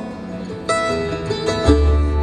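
Live acoustic bluegrass: acoustic guitar and mandolin picking over upright bass, with no singing. A deep upright bass note comes in near the end.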